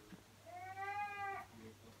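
A pet cat gives one long meow that rises and then falls, about half a second in. It is crying for attention after its owner went out.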